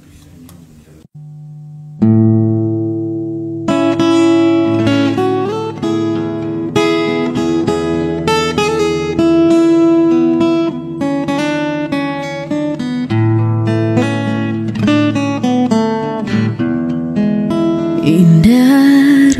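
Acoustic guitar playing an instrumental introduction: a chord rings out about two seconds in, then a run of picked notes over held bass notes.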